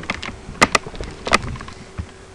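Computer mouse clicking: a few sharp clicks, two close together about halfway in and another a little over half a second later.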